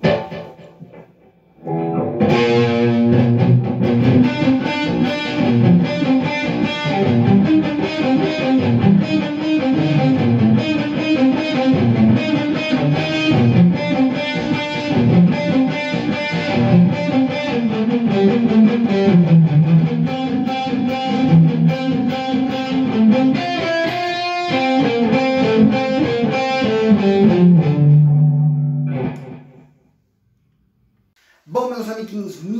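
Electric guitar played through an Ibanez TS9 Tube Screamer and a Marshall Bluesbreaker II overdrive pedal switched on together (stacked overdrive) into a Roland amp, giving a distorted tone. Notes and chords start about two seconds in, break off briefly about three-quarters of the way through, and end on a held low note that dies away.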